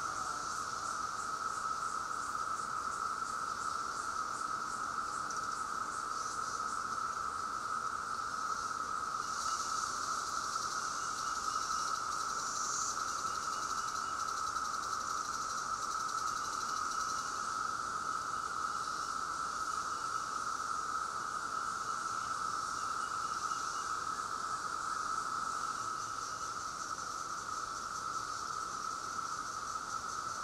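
Chorus of Brood X periodical cicadas: one steady, unbroken droning whine, with a fainter, higher pulsing buzz over it.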